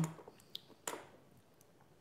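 A pause with quiet room tone, broken by two faint clicks about half a second apart early on.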